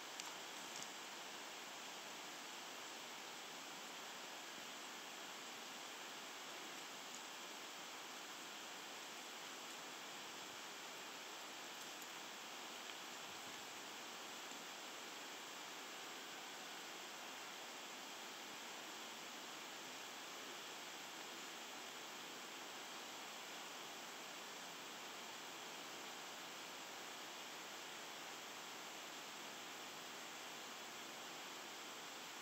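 Steady, even rush of a small river's flowing water, faint and unchanging, with a couple of faint clicks in the first second.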